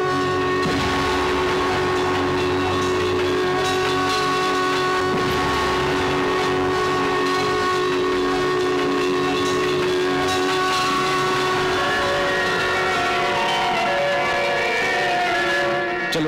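Loud dramatic background score built on many long-held notes sounding together, with a descending run of notes over the last few seconds.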